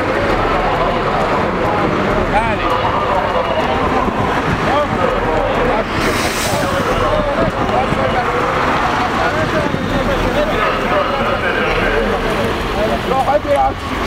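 Several men's voices talking over one another in an argument close to the microphone, with wind buffeting the microphone.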